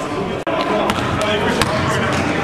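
Basketball game sound: a ball bouncing on the gym floor amid sharp impacts and indistinct players' voices. The sound drops out for an instant about half a second in.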